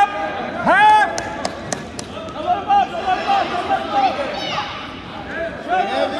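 Loud shouting from coaches and spectators urging on a wrestler, over crowd chatter in a gym, with a few sharp knocks about a second and a half in.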